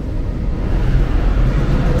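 Idling diesel bus engines, a steady low rumble that grows a little louder about half a second in.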